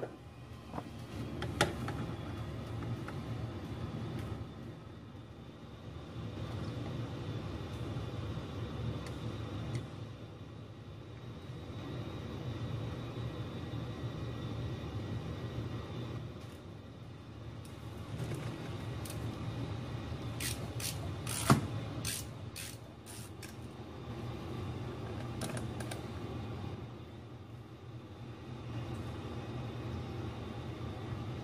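Steady low rumble of a basement furnace running, its level slowly swelling and easing. A few sharp clicks and small taps from hand tools on the amp chassis are heard over it, with a quick cluster of clicks about two-thirds of the way through, the loudest of them a single sharp snap.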